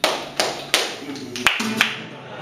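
Flamenco palmas: about five sharp handclaps in an uneven rhythm, with a guitar note ringing faintly under them.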